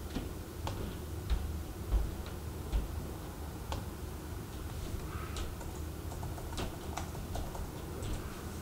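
Sparse, irregular clicks from a laptop keyboard being typed on, a few a second, with a few soft low thumps in the first three seconds.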